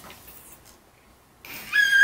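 Eight-month-old baby squealing with delight: a single high-pitched squeal that starts about one and a half seconds in, after a quiet stretch, and holds its pitch.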